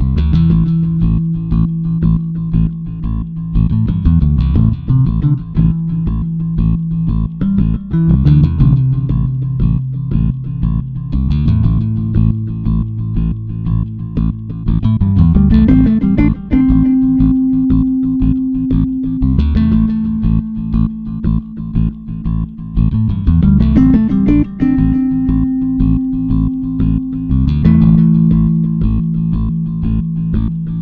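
Background music led by bass and guitar, with a steady beat and the bass line moving to a new note every few seconds.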